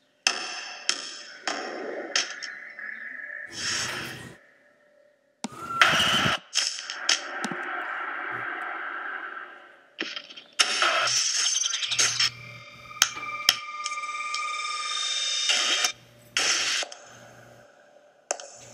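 A montage of short sound-effect clips, cut abruptly from one to the next every few seconds, with scattered sharp clicks.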